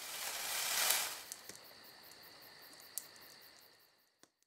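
Sound-effect whoosh for an animated logo, swelling to a peak about a second in and then fading. It is followed by faint, rapid high-pitched ticking, about five a second, over a thin high whine, with a single click about three seconds in, all dying away near the end.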